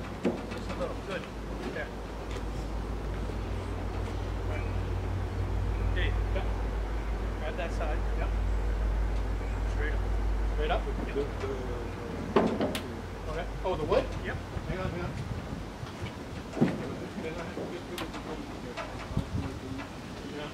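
A low vehicle-like rumble that swells and then fades over the first dozen seconds, followed by several sharp knocks and clunks of wood and metal as the car body and its wooden blocks are handled on the trailer, with low voices in the background.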